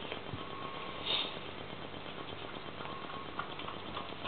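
Two young kittens eating raw meat from a plate on a tile floor: faint chewing and small clicks over steady background hiss, with a brief louder rustle about a second in.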